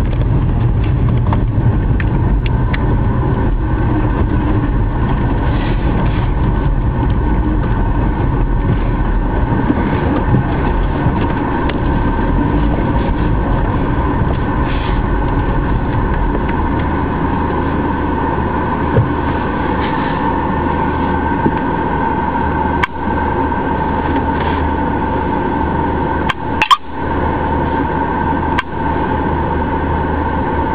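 Steady car interior noise while driving: engine and road rumble, with the low rumble shifting about halfway through. A few sharp knocks near the end.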